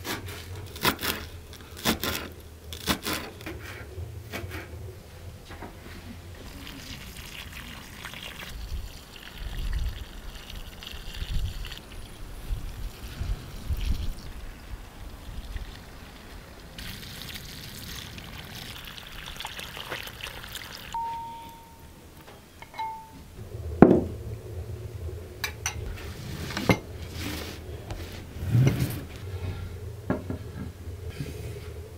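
A kitchen knife chopping parsley on a wooden cutting board, a run of sharp knocks. Then water running from a garden hose for several seconds, and chopping knocks again near the end.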